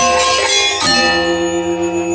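Balinese gamelan angklung of bronze-keyed metallophones and kettle gongs playing quick interlocking strokes, then striking a loud unison accent about a second in that is left ringing with a pulsing shimmer.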